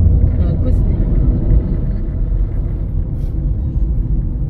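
Steady low rumble of a moving car heard from inside the cabin: engine and tyre noise on the road.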